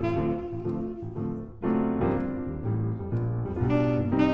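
Live jazz on a Yamaha grand piano: chords over a walking bass line in the left hand. A tenor saxophone holds a long note at the start and comes back in near the end.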